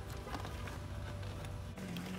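Plastic door trim panel being lifted off its hooks on the door: a few faint clicks and rubs over a steady low hum.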